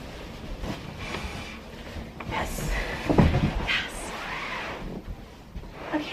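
Mattress being lowered and settled onto a wooden bed frame: shuffling, rubbing noise with one dull thump about three seconds in.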